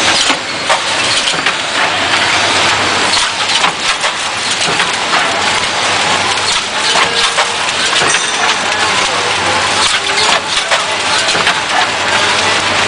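Automatic ampoule blister-packing line running: a loud, continuous mechanical clatter made of many rapid clicks and knocks, over a low hum that comes and goes.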